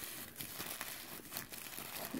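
Thin black tissue paper wrapped round a small package crinkling as hands squeeze and turn it; a faint, irregular run of small crackles.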